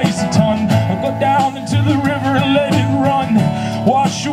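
Live acoustic folk music: acoustic guitar strumming with a cello underneath.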